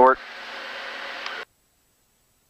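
A spoken word ends, then the steady drone of the Diamond DA42 TwinStar's cabin and engines comes through the headset intercom for about a second and a half. It cuts off suddenly to dead silence as the intercom's voice-activated squelch closes.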